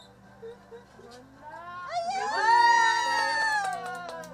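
A long, high-pitched cry that swoops up about one and a half seconds in, holds loud for about two seconds, then trails off.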